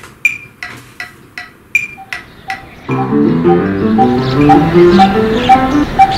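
A metronome ticking steadily, then about three seconds in an upright piano starts playing over it, while a short regular pip keeps the beat under the notes.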